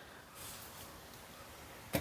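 Faint rustling and handling noise of a power tool and its cord being moved and set down among other tools on the floor. There are no distinct knocks.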